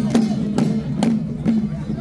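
Temple procession troupe's handheld percussion struck together about every half second, four strikes that slow and then stop, over crowd noise.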